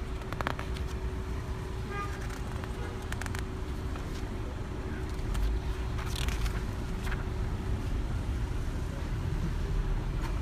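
Steady street traffic rumble, with a few brief rustles of paper pages being handled.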